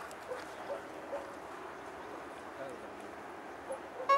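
Quiet open-air background with a steady low hiss and a few faint, brief voice-like sounds scattered through it.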